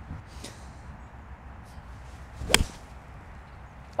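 Iron shot off the tee: a six iron striking a golf ball with one sharp crack about two and a half seconds in, over faint outdoor wind hiss.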